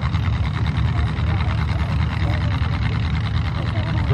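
Vintage pickup truck's engine running at a steady speed in a mud pit, a low rumble with no revving.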